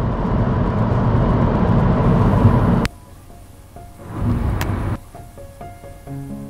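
Steady rumbling road noise, as heard inside a moving car, that cuts off suddenly with a click about three seconds in. A much quieter stretch follows, with a brief low rumble and faint music notes beginning near the end.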